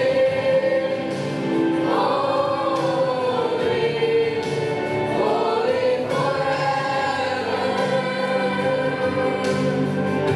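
Youth choir singing a hymn together, with long held notes that slide from one pitch to the next.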